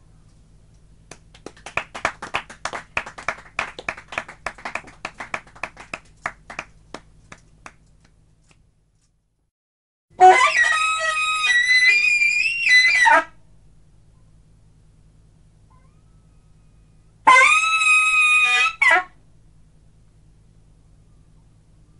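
Scattered applause from a small audience for several seconds. After a short pause, a saxophone plays two held notes: the first lasts about three seconds and bends slightly in pitch, the second is shorter. A faint steady hum runs underneath.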